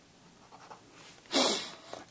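Ballpoint pen writing on paper: faint short scratching strokes, with a brief louder rush of noise a little before the end.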